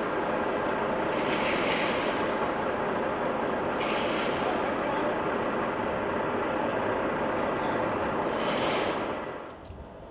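A heavy vehicle's engine running close by, steady, with short hisses a few times, until it drops away about a second before the end.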